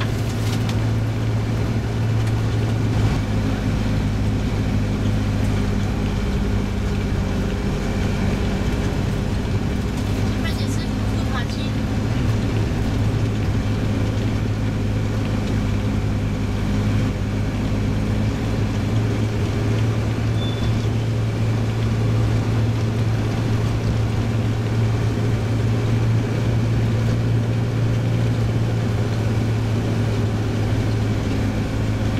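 Steady engine and road drone heard from inside a moving vehicle, with a constant low hum.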